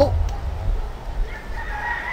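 Rooster crowing: one long, high, drawn-out note that starts past the middle and rises slightly as it is held.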